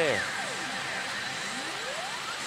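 Pachinko machine sound effects during a reach: a steep falling swoop at the start, then a rising sweep building near the end, over a steady rushing noise.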